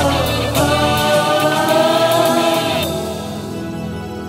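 Kannada film song: a long held sung note over the backing music, ending about three seconds in and leaving a softer instrumental passage.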